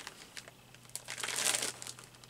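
Clear plastic zipper bag stuffed with fabric scraps crinkling as hands press on and handle it, faint at first and louder from about halfway through.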